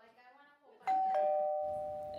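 Two-note ding-dong doorbell chime starting about a second in: a higher tone, then a lower one, both ringing on and slowly fading.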